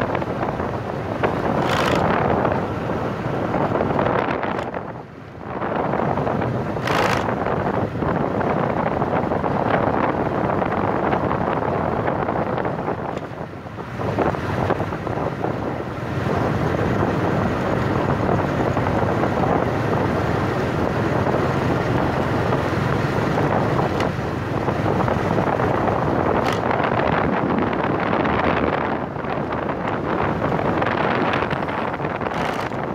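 Wind rushing over the microphone of a moving motorbike, a steady droning with road noise beneath it; it eases briefly twice, about five seconds in and near the middle.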